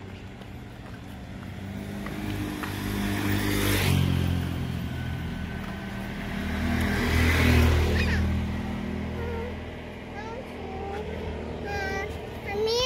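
Motor vehicle engines passing close by on the street. The sound swells to a peak about four seconds in, swells again to a louder peak about seven seconds in, then fades.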